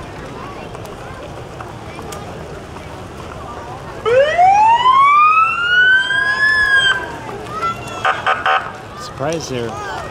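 A police vehicle's siren gives one loud rising wail about four seconds in, climbing for about three seconds and then cutting off. A short burst of rapid stuttering siren tones follows about a second later.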